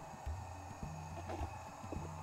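Quiet swallowing of someone drinking beer from a pint glass, faint low gulps over a steady low hum.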